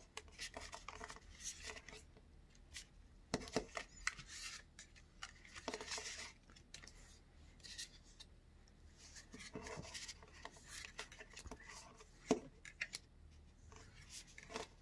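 Trading cards being slid and flicked one by one from a stack in the hands: faint, irregular clicks and scrapes of card stock.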